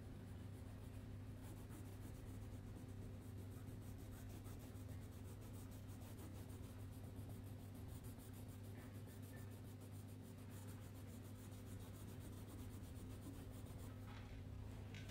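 A crayon rubbed back and forth on paper to color in, heard as a faint, steady scratching of quick strokes over a steady low hum.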